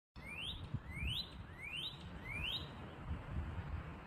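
A northern cardinal singing a phrase of four rising whistled notes, evenly spaced about two-thirds of a second apart, ending a little past halfway, over a low rumble.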